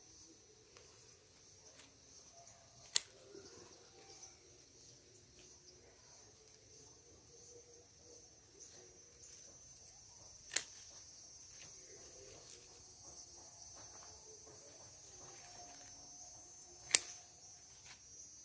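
Three sharp snips of scissors cutting through lettuce stems, several seconds apart, over a faint, steady chirring of insects.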